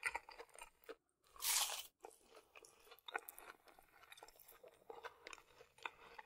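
Close-up chewing of McDonald's chicken nuggets: crisp crunching and mouth clicks as a nugget is bitten and chewed. About a second and a half in, a louder half-second burst of noise, with a brief dead silence just before and after it.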